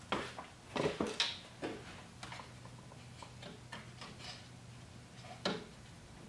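Hard plastic clicking as fingers pry at the retaining tabs of a Toyota Tacoma grille emblem: a scatter of light, irregular clicks, with a louder one near the end.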